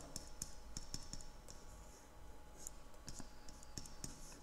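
Faint, irregular clicks and taps of a stylus on a pen tablet as handwriting is written, over a low steady hum.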